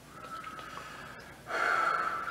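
A person's loud, sharp in-breath, a gasp, about one and a half seconds in, drawn just before speaking. Before it there is only a faint, thin, steady high note.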